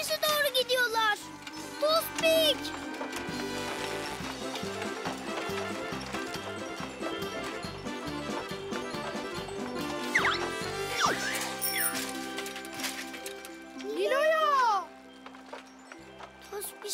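A young girl's cry in the first couple of seconds, then lively background music with a steady beat. Near the end, a loud voice call rises and falls in pitch.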